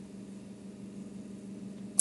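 Quiet room tone through a recording microphone: faint hiss with a steady low electrical hum, and a single short click at the very end.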